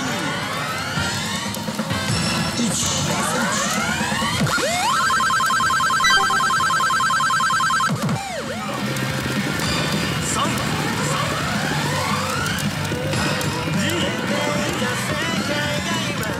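Pachinko machine's electronic effects over its music: repeated rising sweeps, then a fast pulsing tone held for about three seconds in the middle that ends in a falling sweep.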